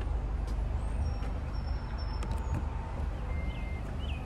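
Outdoor ambience: a steady low rumble, with a few faint high chirps and light clicks over it, mostly in the second half.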